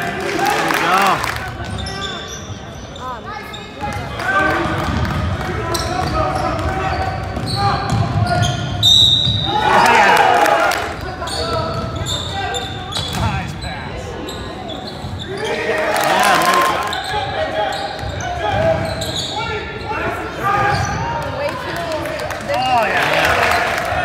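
Basketball game in a large echoing gym: a ball bouncing on the hardwood court amid the shouting voices of spectators and players.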